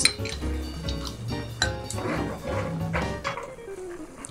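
Kitchenware clinking, a sharp clink right at the start and a lighter one about one and a half seconds in, over background music.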